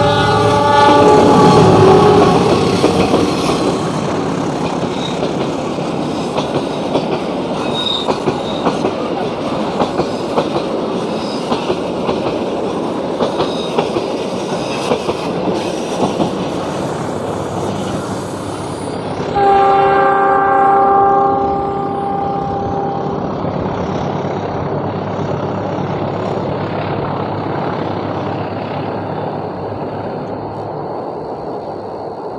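Diesel-hauled parcel train, double-headed by GE CC206 and CC201 locomotives, passing with its engines running and the wheels clicking regularly over the rail joints. A locomotive horn sounds as the train approaches, and a second horn blast of about three seconds comes about two-thirds of the way through.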